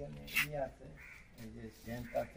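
Men's voices speaking in short, unclear phrases.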